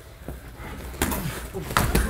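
Two heavy thuds of sparring contact, strikes or a body going down on the gym mat, about a second in and again near the end.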